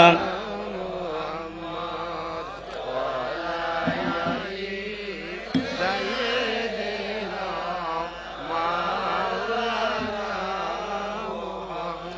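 A gathering of many voices chanting a durood (salawat, blessing on the Prophet) together in a slow, wavering melody.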